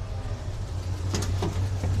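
1976 Chevy Blazer's Holley-carbureted engine idling steadily just after being started, with one light click about a second in.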